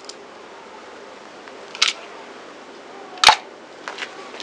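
A car tyre crushing liquid-filled balloons: two sharp cracks, one near the middle and a louder one near the end, as a balloon bursts under the tyre.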